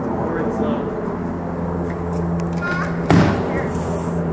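A wooden ramp splitting under a car's wheel: one sharp crack about three seconds in, over a steady low hum.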